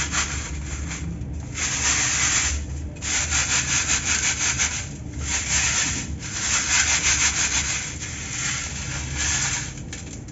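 Dry cement crumbs rubbed by hand against the wire mesh of a round metal sieve: a gritty scratching in several stretches of quick back-and-forth strokes, about five a second, with short pauses between.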